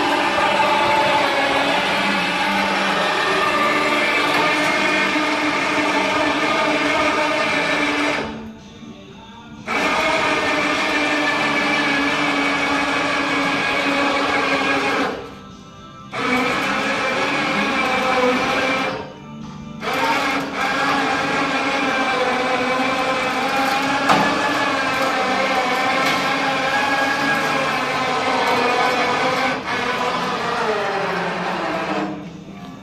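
Electric motor of a truck-mounted motorcycle lift rack running with a steady whine as it tilts the bike upright, stopping abruptly for about a second three times before starting again.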